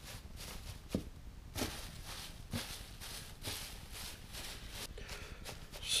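Dry leaves rustling as a gloved hand scatters them over a worm bin, in a series of soft, uneven strokes.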